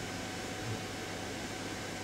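Room tone: a steady hiss with a faint low hum.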